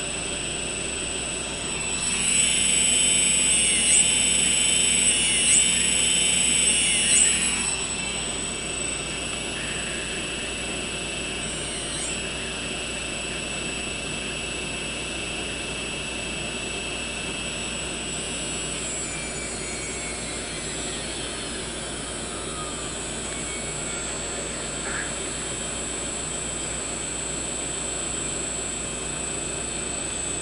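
Quadcopter's brushless motors running together in a high, many-toned whine, louder for a few seconds near the start with several quick dips in pitch. Past the middle, some of the tones slide down as motors slow on their own with the throttle untouched. This is the motor sync fault, motors fading out instead of holding speed.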